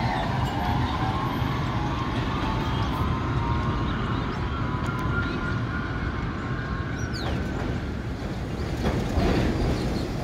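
New York City subway trains on an elevated steel line: a steady rumble of wheels on rails, with a motor whine rising slowly in pitch as a train gathers speed, fading out after about seven seconds. Near the end another train coming into the station grows louder.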